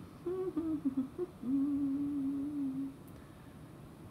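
A woman humming with closed lips while reading: a few short wavering notes, then one longer, steady, lower note that stops about three seconds in.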